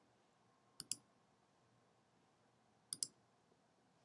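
Two quick pairs of computer mouse clicks, one about a second in and another near three seconds, with near silence around them.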